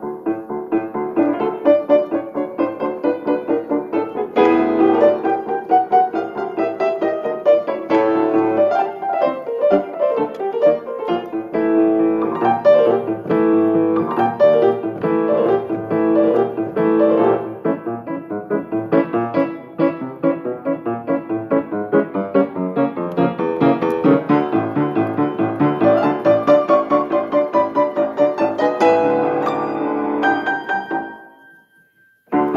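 Acoustic piano played solo: a fast, continuous passage of many quick notes and runs.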